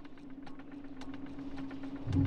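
Sound design of a TV news bumper: a steady low hum with rapid, irregular ticking clicks over it, slowly growing louder.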